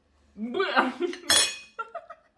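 Metal cutlery clinking on a dish: one bright, ringing clink about halfway through, then a few lighter clinks near the end. Before the first clink, a short wordless voiced sound.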